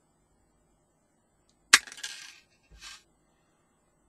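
A sharp click, then a brief rustle and a softer knock, as small parts and wires are handled on a desk.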